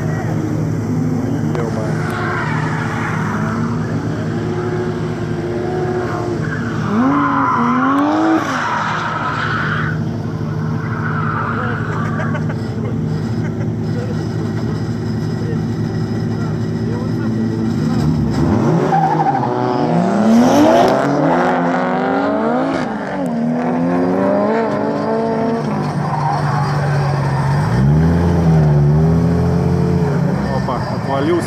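Drift cars' engines revving up and down several times, with tyres skidding, over a steady engine hum close by. The revving is strongest in the middle of the stretch.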